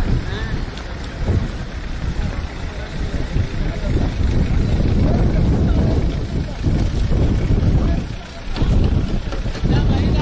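Wind buffeting the microphone: a loud, gusty low rumble, easing briefly near the end, with faint voices underneath.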